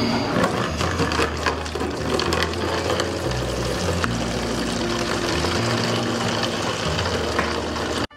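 Water pouring from one large plastic water jug into another, under background music with a bass line that steps between notes.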